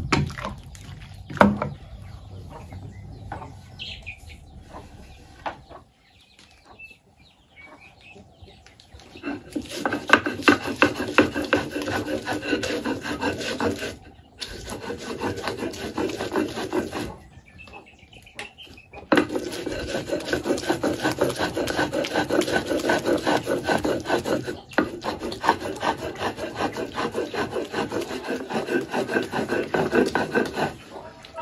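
Stone mano rubbed back and forth on a stone metate, grinding chipotle chiles into salsa: a loud gritty rasping in long runs, starting about a third of the way in and broken by two short pauses. Before it there is quieter scraping, with a single sharp knock early on.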